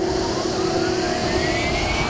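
Cartoon whoosh sound effect of something flying past: a loud rushing noise whose pitch climbs steadily, like a jet fly-by.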